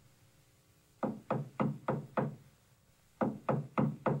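Knocking on a door from a cartoon soundtrack heard through a TV's speakers: two runs of five even knocks, about three a second, one about a second in and one near the end. It is not the club's secret password knock.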